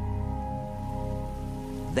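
Background music: a steady held chord over a low rumble.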